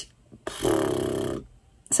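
A woman's short, breathy laugh, one sound just under a second long starting about half a second in.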